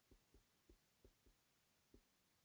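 Near silence: faint room tone with about six soft, low thuds at uneven intervals.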